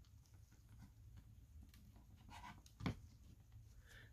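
Near silence: room tone, with one brief click nearly three seconds in as a stiff board-book page is turned and laid down.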